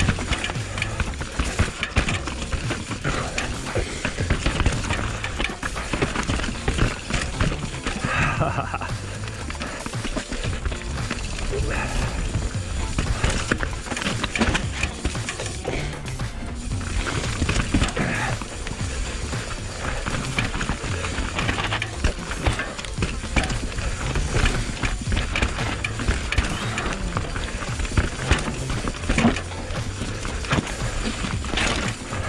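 Mountain bike riding down a rough dirt singletrack, heard from a camera on the handlebars: tyres rolling over dirt, rocks and roots, with a constant jumble of rattles and knocks from the bike over the bumps.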